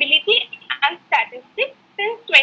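A woman speaking over a video call. Her voice is thin and cut off in the highs, like a telephone line.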